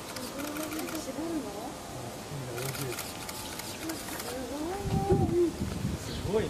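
People talking indistinctly, louder near the end, with a short rapid run of clicks about two and a half seconds in.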